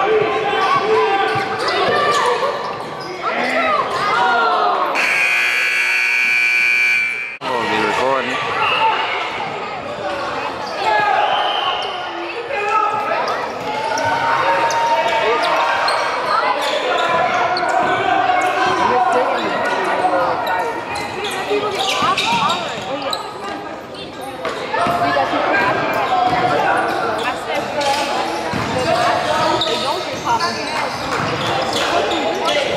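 Basketball game sounds in a echoing gymnasium: a ball bouncing on the hardwood floor and indistinct voices of players and spectators calling out. About five seconds in, a scoreboard buzzer sounds steadily for about two seconds.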